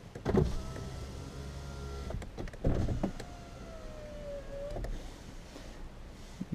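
A car's electric window motor running twice, each run about two seconds long and starting with a click; the second whine sinks slightly in pitch and stops with a knock as the glass reaches the end of its travel.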